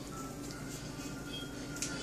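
Quiet background music with a few held notes, and a couple of faint clicks.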